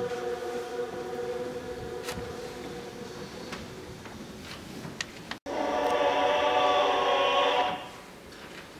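Recording of a large choir, played back from a phone speaker into a microphone: a long held chord dies away, the sound cuts out completely for an instant about five and a half seconds in, then a louder sustained chord sounds and stops abruptly near the end.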